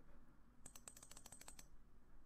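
Faint, quick run of about ten computer clicks over near silence, starting about half a second in and lasting about a second.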